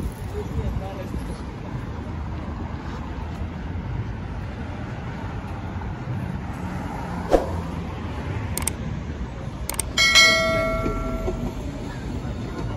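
Street ambience on a city promenade: a steady hum of road traffic with voices of passersby, a few sharp clicks, and a single bell-like chime about ten seconds in that rings out and fades over a second or so.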